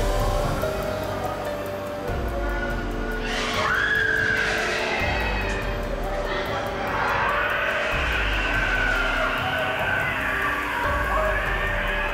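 Haunted-attraction soundtrack: a low bass pulse about every three seconds under held droning tones. About three seconds in, a high wavering wail joins, gliding up and down.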